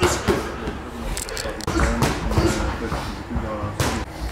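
Boxing sparring: several sharp smacks of padded gloves landing on gloves and headgear, the loudest right at the start and just before the end, over indistinct voices.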